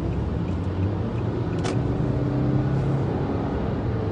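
Steady engine hum and road noise heard from inside a moving car's cabin.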